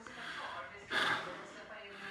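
A man's audible intake of breath about a second in, a short sharp inhalation.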